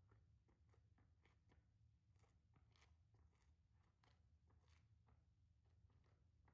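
Near silence: faint room tone with a steady low hum and scattered faint clicks.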